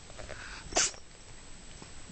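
A cat grooming herself: faint licking and fur sounds, with one short, sharp burst about three-quarters of a second in.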